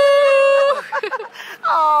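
A girl's long, high-pitched yell, held steady, breaking off just under a second in. Short laughs follow, then a "yeah" near the end.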